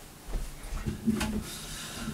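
Soft footsteps and low thumps on a carpeted floor as a person sits down on a wooden chair, with a sharp click a little after a second in.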